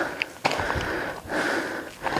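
A man breathing hard from the climb: two long, heavy breaths in quick succession.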